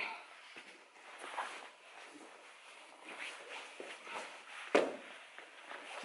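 Two grapplers in gis moving on foam mats: fabric rustling and bare feet and bodies shifting on the mat, with one sharp thump near the end as a body hits the mat.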